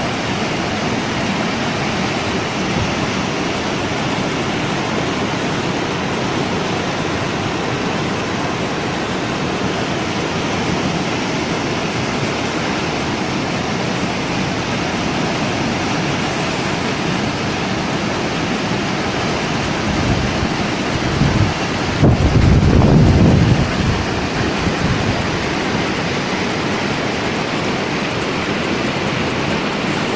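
Floodwater rushing through a swollen river past a broken concrete bridge: a loud, steady rush of churning water. About twenty seconds in, a louder low rumble rises over it for a few seconds.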